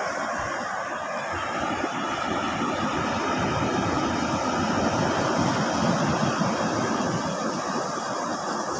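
Steady rushing noise of wind buffeting the microphone, with surf in the background.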